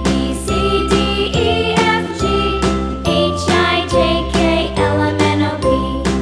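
Background children's music: a melody of short, bright notes over a steady bass line and beat.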